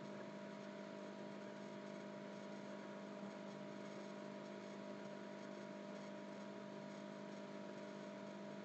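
Faint steady electrical hum with a low hiss, held on a few fixed pitches with no change throughout.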